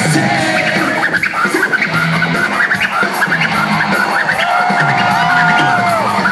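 Rock band playing live in a large hall, with turntable scratching in quick choppy strokes over the band. A single held note enters about four and a half seconds in.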